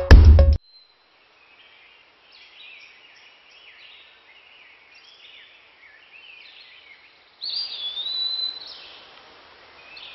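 Music with a strong beat cuts off suddenly, giving way to faint birds chirping and calling among trees over light background hiss. The calls grow louder for a couple of seconds about seven seconds in, with one long sliding call.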